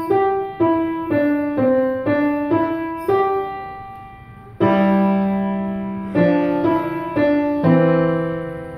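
Acoustic grand piano played by a child: a plain melody of single struck notes, about two a second, each fading before the next. A note is held and dies away about three seconds in, then a loud chord with a low bass note comes in about halfway through and the melody goes on.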